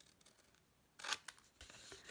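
Scissors cutting black cardstock, snipping into a corner of a scored pocket piece to miter it: quiet for the first second, then a few short snips about a second in and a faint slide of the blades through the card.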